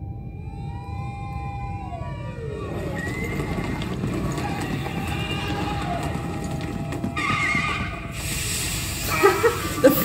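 Film soundtrack playing: a pitched tone with overtones that wavers and then glides down about two seconds in, over a steady low rumble, with a stretch of hiss near the end. A woman laughs at the very end.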